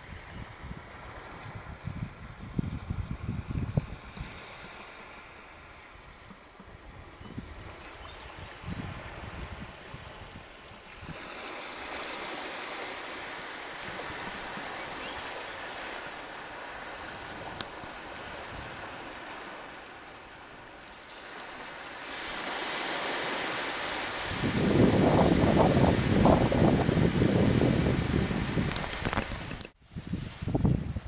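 Shallow water trickling and running over a rocky tidal shelf, with wind gusting on the microphone. The rush gets much louder for the last few seconds and then cuts off abruptly.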